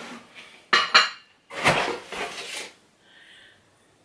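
Glassware clinking and knocking against other glass in a cardboard box as a drinking glass is taken out: two sharp clinks just under a second in, then a longer shuffling of glass and cardboard.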